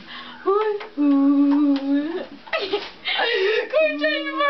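Young women's voices singing and laughing: a note held for about a second, then breathy laughter near the end.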